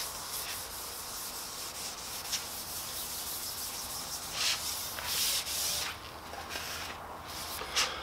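A pad rubbing paste wax across the metal bed of a 12-inch jointer: a steady rubbing hiss, louder for a couple of strokes about halfway through.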